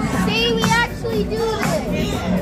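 A crowd of children shouting and cheering over dance music, with one child's high voice standing out loudest in the first second.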